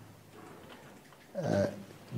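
A pause in a man's speech: low room tone, then a short single voiced syllable, like a hesitation sound, about one and a half seconds in.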